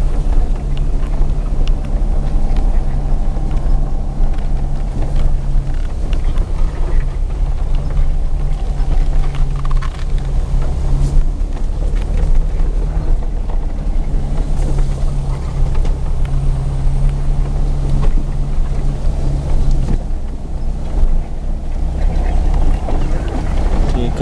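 A moving motor vehicle's engine and road noise heard from on board: a steady low rumble with an engine drone that strengthens for a few seconds at a time and eases off.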